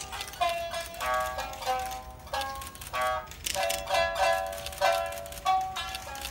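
Shamisen played live: a steady run of sharply plucked notes, each ringing briefly before the next.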